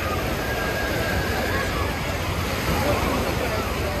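Busy beach ambience: many people talking at once, none of it clear, over the steady wash of surf breaking close by.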